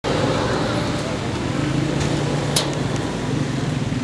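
Indistinct voices over a steady noisy background, with one sharp click about two and a half seconds in.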